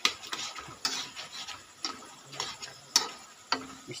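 Steel spatula scraping and knocking against a wok while stirring frying chicken pieces, in quick strokes about two a second, over a faint sizzle of the oil.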